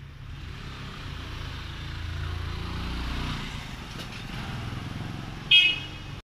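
A motor vehicle passes by: its engine and road noise swell to a peak around the middle and then fade. A brief high-pitched tone sounds near the end.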